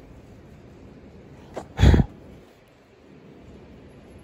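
A single short, sharp snort-like burst of breath close to the microphone about two seconds in, with a fainter one just before it.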